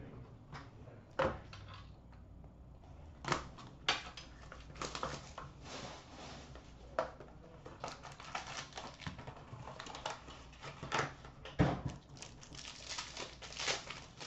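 Hands opening a trading-card box: cardboard and packaging rustling, with scattered sharp knocks and clicks as the box and the case inside it are handled on a glass counter.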